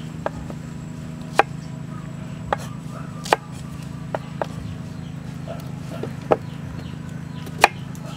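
Knife chopping small onions on a wooden chopping block: about eight sharp, irregularly spaced chops, the loudest near the end.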